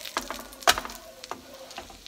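Spatula knocking and scraping on a nonstick griddle pan as black bean patties are shifted and flipped: a handful of sharp knocks, the loudest about a third of the way in, over a faint frying sizzle.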